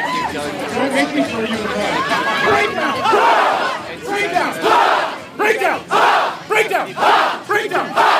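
A large crowd of people growling and yelling together in a "breakdown" warm-up drill, many voices overlapping. In the second half the yells come in short, loud bursts about every half second.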